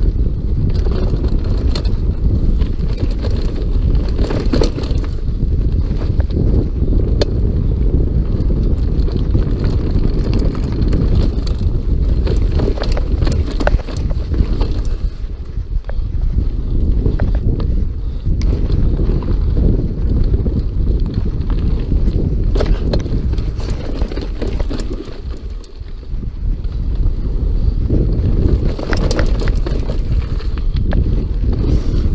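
Mountain bike riding fast down a dirt trail: heavy wind buffeting on the action camera's microphone and tyre rumble, with frequent rattles and knocks from the bike over bumps.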